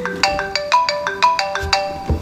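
Mobile phone ringing with a melodic ringtone: a quick tune of about a dozen bright notes that stops just before the end.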